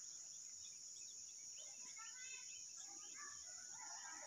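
Faint outdoor field ambience: a steady high-pitched insect drone, with faint distant bird calls from about halfway through.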